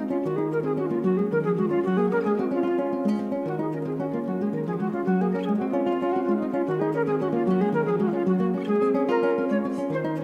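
Classical guitar playing a quick, even stream of plucked notes over a bass note that returns every few seconds, in an instrumental piece for flute and guitar.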